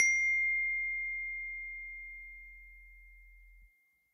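A phone's text-message notification: a single clear ding that rings on one high tone and fades slowly away over about three and a half seconds.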